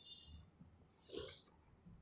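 Near silence in a pause between spoken sentences, with one short, soft intake of breath about a second in.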